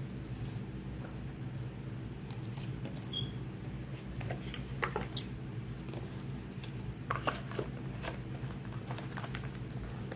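A steady low hum with several evenly spaced tones runs throughout, with a scattering of soft, brief clicks and taps from something being handled, bunched around the middle and again later on.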